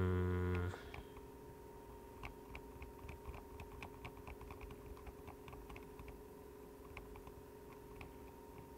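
A man's held "mm" hum ends just under a second in, then faint, irregular clicks of typing on a computer keyboard over a steady electrical hum.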